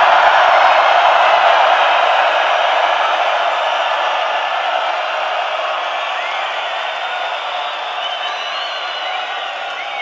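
A large stadium crowd cheering and shouting just after the song ends, with a few whistles near the end, slowly fading.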